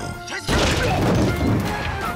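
A sudden loud crash about half a second in, dying away over the next second or so, over trailer music.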